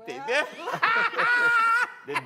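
People laughing, with one high-pitched laugh held for about a second in the middle.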